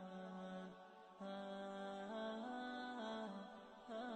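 Soft background music: a slow, chant-like melody of held notes that step from one pitch to the next over a steady low drone, briefly dipping about a second in.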